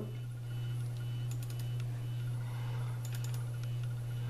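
A steady low hum, likely from the running desktop computer, with two small bursts of faint mouse clicks, about a second in and again near three seconds, as the media player windows are closed.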